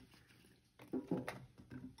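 A few soft knocks of whole button mushrooms dropped by hand onto vegetables in a stainless steel roasting pan, about a second in.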